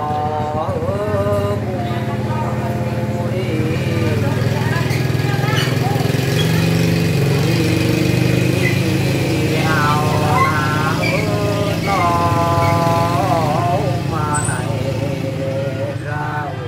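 Unaccompanied Muong folk singing (hát Mường): a voice holding long, wavering notes, in two phrases at the start and again after about ten seconds. A steady low engine drone runs underneath, loudest in the middle.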